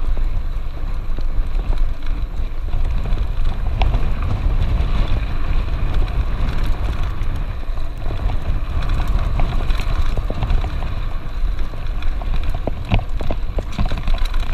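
Mountain bike rolling fast downhill on a dirt and gravel road: steady tyre noise with scattered clicks and rattles from the bike over the rough surface, under a heavy low rumble of wind on the microphone.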